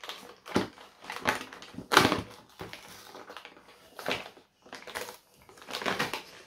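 A cardboard advent calendar window being poked and torn open with a pen: a series of irregular crackles and snaps of tearing cardboard, the loudest about two seconds in.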